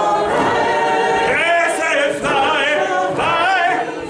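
A man singing unaccompanied, holding long notes with a wide, wavering vibrato.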